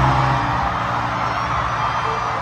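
Concert sound from the arena's PA: a held deep bass note that cuts off about half a second in, over steady crowd noise.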